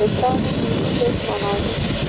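Embraer E195 airliner's jet engines running at low taxi power as it rolls past, with a voice heard over it.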